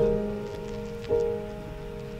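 Soft instrumental backing of a pop ballad between sung lines: sustained chords, with a new chord struck about a second in, over a faint hiss.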